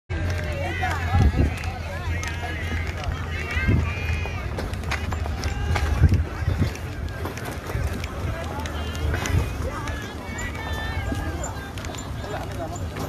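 Several people's voices talking indistinctly over a steady low rumble, with a few short low thumps.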